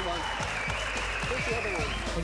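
Audience applause over background music with a steady, repeating beat.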